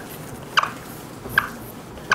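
Dry-erase marker squeaking on a whiteboard as it draws underlines: two short squeaks, about half a second in and again about a second and a half in.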